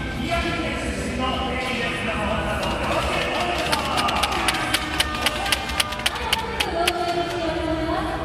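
A voice over music, with a run of sharp clicks, about three a second, from about three seconds in until near the end.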